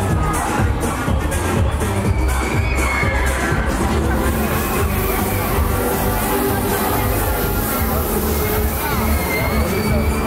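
Loud electronic dance music with a heavy beat from a fairground ride's sound system, over crowd noise with a few shouts and cheers.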